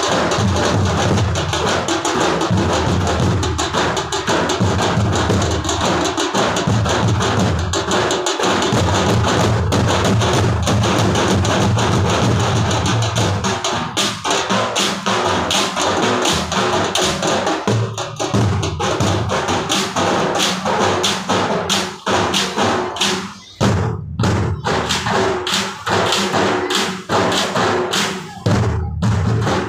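A group of drums playing a loud, fast, steady beat, with sharp stick strikes close by. The beat breaks up into shorter patches with brief gaps in the second half.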